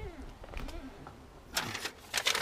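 A click as a car's boot lid is opened, then a short burst of rustling about a second and a half in as things in the boot are handled.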